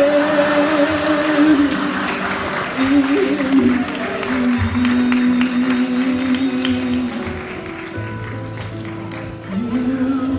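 A young man singing into a microphone with musical accompaniment, holding long notes. Audience applause and cheering fill the first few seconds, then fade under the song.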